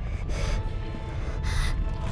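Two strained, gasping breaths about a second apart from an exhausted person, over a steady low rumble and background music.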